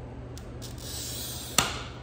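Glass cutter wheel scoring a line across a sheet of glass: a thin hissing scratch for about a second, ending in one sharp click.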